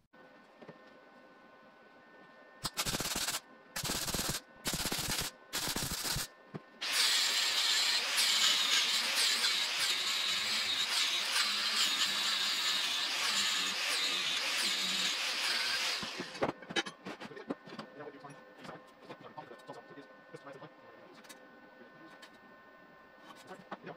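MIG welder laying four short tack welds in quick succession, then running a continuous crackling bead for about nine seconds, joining steel parts of a drill stand. Faint clicks and knocks follow once the arc stops.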